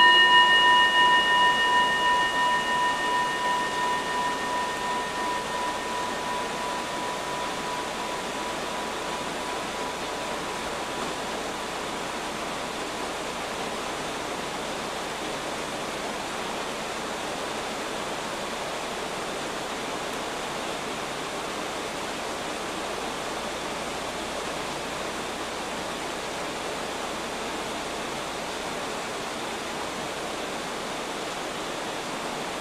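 A kin, a Japanese Buddhist bowl bell, rings out from a strike just before, its tone fading away over about the first ten seconds. A steady hiss of rain runs underneath.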